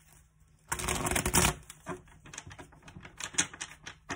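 A deck of oracle cards being shuffled by hand: a dense rush of cards about a second in, then a run of quick, irregular card clicks and snaps.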